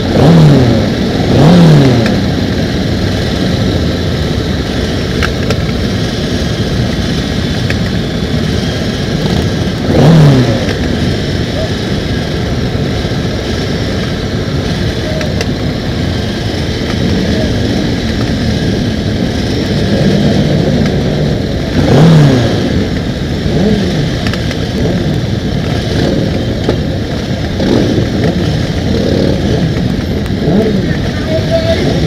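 Many motorcycles idling together, with riders now and then blipping a throttle so an engine revs up and drops straight back: twice near the start, once about ten seconds in, and twice more after twenty seconds.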